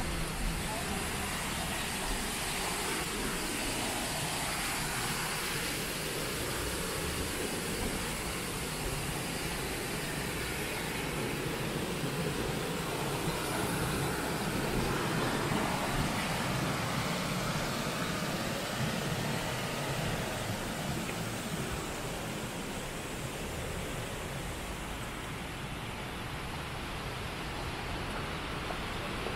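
Steady city street ambience: road traffic running as a continuous hiss, with people's voices in the background, swelling a little in the middle.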